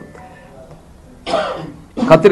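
A brief pause in a man's speech, broken about a second in by a single short cough.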